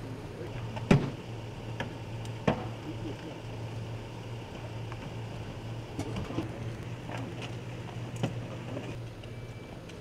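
A steady low hum with a few scattered sharp knocks and clicks. The loudest knock comes about a second in, and a few more follow in the second half.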